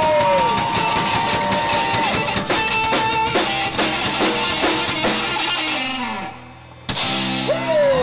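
Live rock band playing: electric guitars with held notes over a drum kit. Near the end the music drops away for about half a second, then a single loud full-band hit comes in.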